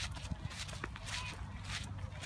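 Footsteps of people walking on a path: a series of short scuffing steps over a low rumble.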